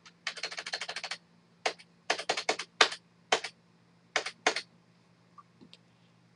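Computer keyboard keys being tapped while editing text: a quick run of about a dozen keystrokes near the start, then scattered single taps and small clusters.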